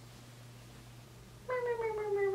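A woman's voice holding one long note that slowly falls in pitch, starting about one and a half seconds in after a near-quiet stretch.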